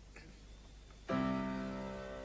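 The first chord of a live romantic ballad's intro, played on piano, struck suddenly about a second in and left to ring and fade.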